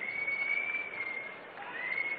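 A high whistle held for about a second and a half, rising slightly at the start. A second whistle begins near the end, over faint background noise.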